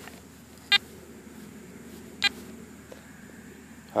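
Garrett AT Gold metal detector giving two short electronic beeps about a second and a half apart as its touchpad buttons are pressed, over a faint low steady hum.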